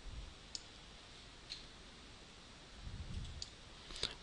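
Three faint computer mouse clicks, spread over a few seconds, as a shape is drawn in drawing software.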